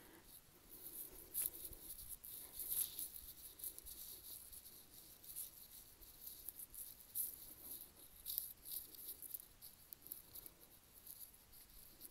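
Faint handling noise of a handheld camera being carried around: scattered light rustles and ticks.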